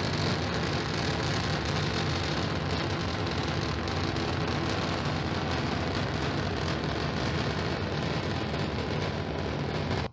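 Raptor rocket engines of a Starship prototype firing during a test-flight ascent: a steady, even rushing noise with a deep rumble underneath.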